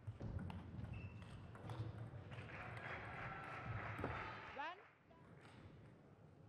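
A table tennis rally: the plastic ball clicking back and forth off rackets and table in a quick, irregular series of knocks. A short rising squeak comes near the end, and the clicks stop about five seconds in as the rally ends.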